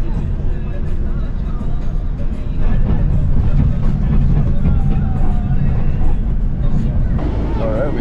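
Bus engine and road rumble heard from inside the passenger cabin, growing louder about three seconds in, with music and indistinct voices faintly over it.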